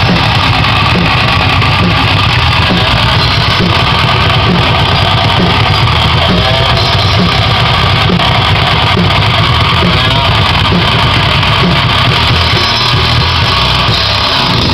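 Live metal-punk band playing loud and without a break: distorted electric guitar over a drum kit.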